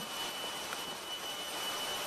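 Steady machinery noise in a ship's engine room: an even, continuous roar with no distinct rhythm or individual sounds.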